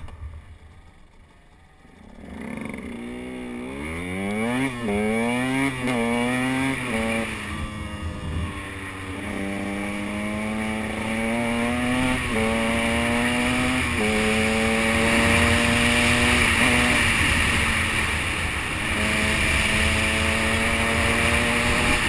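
KTM 125 EXC two-stroke enduro bike pulling away about two seconds in, its revs climbing through several quick gear changes. It then settles to a steady cruise with wind rush on the microphone, eases off briefly and picks up again near the end.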